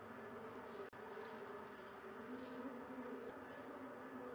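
Steady low buzzing hum from a nest-box camera's microphone, with no bird calls. It cuts out for an instant just under a second in.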